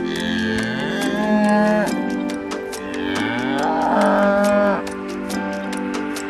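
A cow mooing twice, two long calls about a second apart, over background music.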